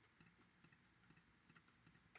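Near silence, with about half a dozen faint, sharp clicks from a computer mouse or trackpad as states are clicked on.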